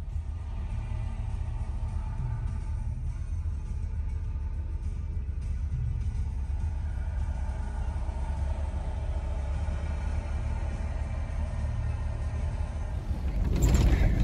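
Pickup truck running, heard from inside the cab: a steady low rumble.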